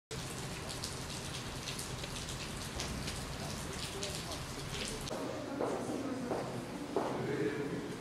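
Ambient background: a steady hiss with scattered light ticks. Indistinct voices come in from about five seconds in.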